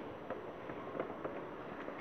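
Faint handling noise from a packaged stationery set: light rustling with a few soft taps and clicks as it is turned over in the hands.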